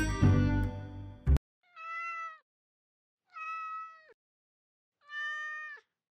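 Background music cuts off about a second and a half in, then a cat meows three times, evenly spaced, each meow dropping in pitch at its end.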